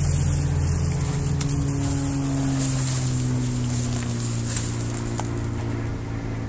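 A steady, low engine-like drone with several humming tones, one of which slides slowly downward partway through. A single sharp click is heard about four and a half seconds in.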